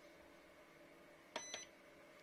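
Small Peltier-type electric dehumidifier giving a short electronic beep, lasting about a quarter second, about a second and a half in, as its power button is pressed and it switches on.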